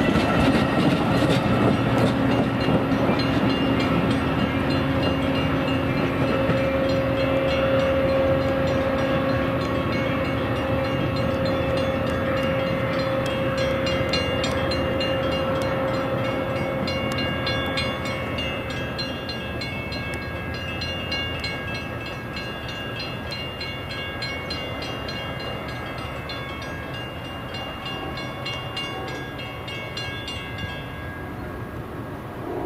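Metra bilevel commuter train rolling past, wheels and cars rumbling on the rails, then fading steadily as the train pulls away. A steady pitched tone runs through the first half.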